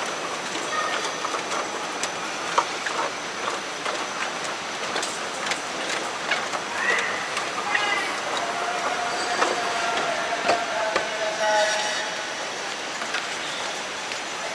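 Airport moving walkway running: a steady mechanical noise with many irregular clicks and rattles, heard riding on the walkway.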